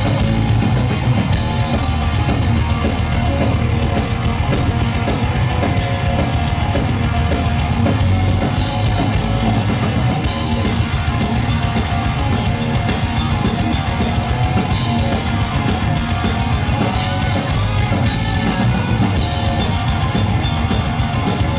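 Live heavy metal band playing loud and steady: distorted electric guitars, bass guitar and drum kit, heard through the venue's PA from the crowd.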